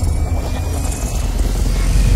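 Cinematic logo-intro sound effect: a deep, steady rumble with a faint, slowly rising whine over it.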